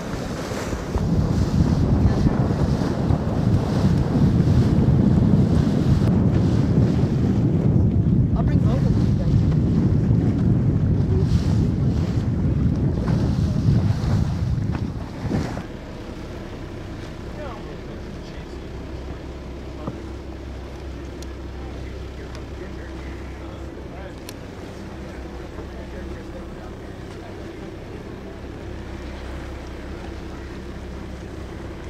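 Wind buffeting the microphone over the rush of the sea, loud for about the first fifteen seconds, then dropping suddenly to a quieter, steady low drone of a motor boat's engine under lighter wind and water noise.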